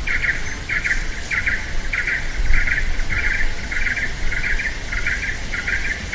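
A rhythmic series of short, buzzy chirps at one steady high pitch, a little under two a second and evenly spaced, from an unseen animal calling, over a low rumble.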